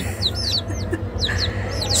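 Baby chicks peeping: a run of short, high cheeps that slide downward in pitch, with a brief lull a little before halfway.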